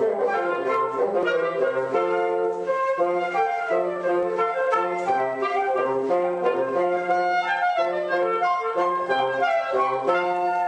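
Woodwind quartet playing live: flute and bassoon with other wind instruments in close harmony, the bassoon sounding repeated low notes beneath the higher melodic lines.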